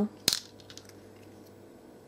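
A small bead dropped into a plastic storage box: one sharp click with a brief rattle about a third of a second in.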